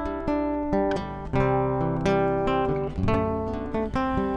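Acoustic guitar playing an instrumental passage of picked and strummed chords, about three notes or strokes a second, each left to ring.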